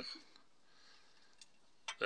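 Near silence: room tone, with a faint click about one and a half seconds in and another just before the end.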